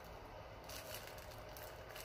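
Faint, intermittent rustling of tissue paper held in a hand, over a low steady room hum.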